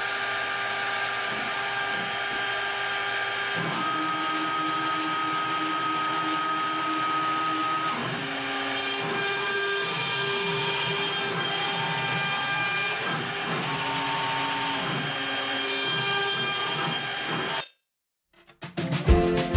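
CNC router running: the 3 kW air-cooled spindle whines steadily while a small bit engraves a hardwood board, and the machine's motors add tones that step up and down in pitch as the head moves, from about four seconds in. The sound cuts off suddenly just before the end.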